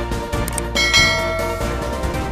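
A bright bell-chime sound effect rings once, starting about three-quarters of a second in and fading within about half a second, over background music with a steady beat.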